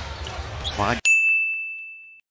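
Arena game broadcast sound cuts off abruptly about halfway through. A single bright, bell-like ding sound effect then rings out and fades over about a second.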